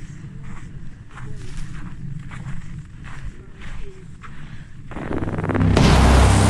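A motor vehicle's engine runs steadily as it comes along a snowy track. About five seconds in, a much louder rushing noise rises and holds for about two seconds.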